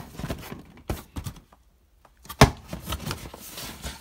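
Shoes and cardboard shoe boxes being handled and shifted: a run of small knocks and clicks, then a short pause, then one loud thunk about two and a half seconds in, followed by softer rustling.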